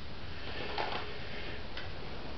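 Plastic CD jewel cases being handled, with two light clicks about a second apart over a low steady background.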